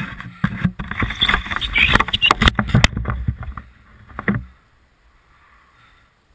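Close rubbing and knocking on a helmet-mounted camera, a dense run of handling noise that stops about four and a half seconds in.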